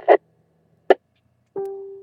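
Radio receiver on an amateur net: a short squelch click about a second in, then near the end a single pitched beep that fades away, the repeater's courtesy tone marking that the station checking in has unkeyed.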